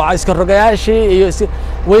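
A man speaking in Somali into news microphones, with a steady low rumble underneath.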